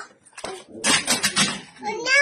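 A plastic crocodile-dentist toy being handled, with a sharp click about half a second in, then clattering of hard plastic over voices.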